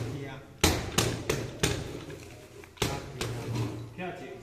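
A small wooden hand-held temple sedan chair knocking against a wooden table: sharp wooden knocks in irregular clusters, four in the first couple of seconds and two more near the end.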